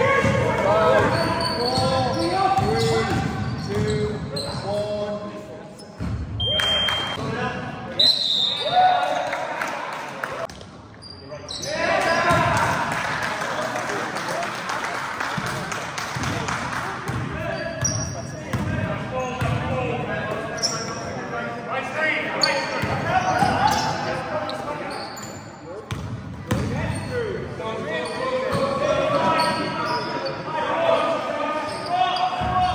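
A basketball bouncing on a sports-hall floor during play, with players' indistinct shouts and calls and short squeaks, all echoing in the large hall.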